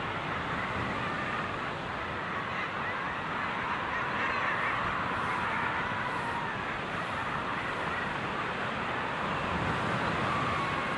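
A dense colony of common guillemots calling on a breeding ledge, many overlapping calls merging into one steady mass of sound.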